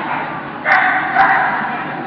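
A dog barking during an agility run, a loud burst starting about a third of the way in and fading with the hall's echo.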